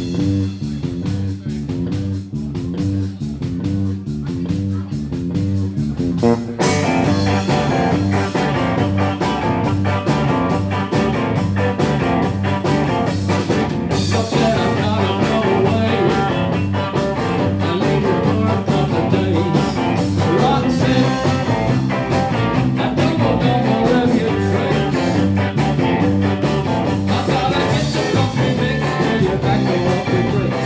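Live rock trio of electric guitar, bass and drums playing a driving rhythm-and-blues number with a busy bass line. For about the first six seconds the sound is thin, mostly bass and drums; then the fuller band sound, guitar included, comes back in.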